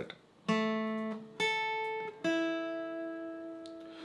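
Acoustic guitar playing single picked lead notes: three notes about a second apart, each left ringing and slowly fading.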